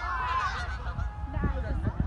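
A flock of geese honking in flight, many calls overlapping.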